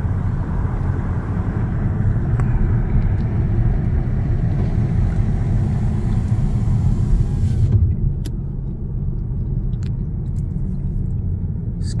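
Car cabin rumble and road noise from the tyres while driving a narrow road. The higher hiss drops away sharply about eight seconds in, leaving the low rumble, with a few faint ticks.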